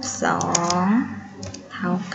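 Computer keyboard being typed on: a few quick keystroke clicks in the first second, as characters are entered on a slide.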